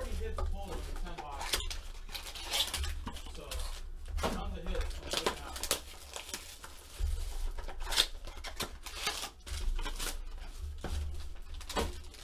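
Foil trading-card pack wrappers crinkling and tearing as hands handle and open packs, in scattered short bursts, over a low steady hum.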